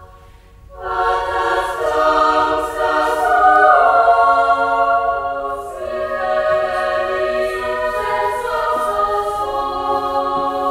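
Women's choir singing a cappella in sustained chords that move slowly from one to the next, after a short break that ends about a second in.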